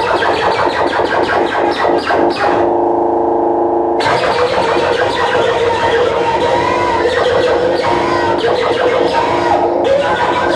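Loud live electronic noise music. A rapid, stuttering chopped texture gives way at about two and a half seconds to a held, muffled buzzing drone. At about four seconds it bursts back into a dense, full-range wall of noise with warbling tones.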